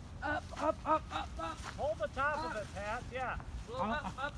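Voices of several people talking and calling out, too indistinct to make out, over a steady rumble of wind on the microphone.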